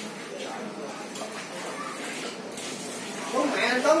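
Indistinct background talk of people in the room, with one voice growing louder and clearer near the end.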